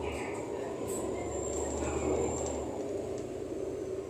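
Cabin noise inside a moving city bus: a steady rumble of engine and road with a faint high whine. The deep engine drone drops away about two and a half seconds in.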